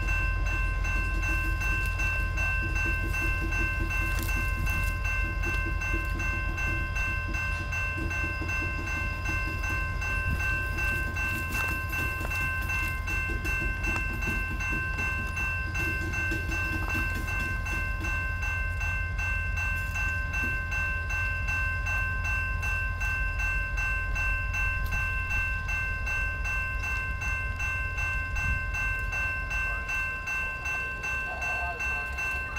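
A railroad grade-crossing bell ringing steadily over the low rumble of freight cars rolling slowly past on the rails.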